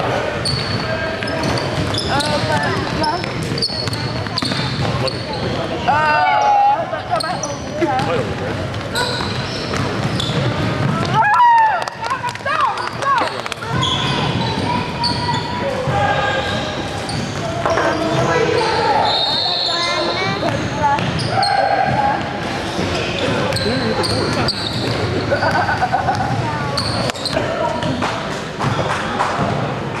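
Basketball game on a hardwood gym court: the ball bouncing on the floor among short sharp knocks and the voices of people talking and calling out.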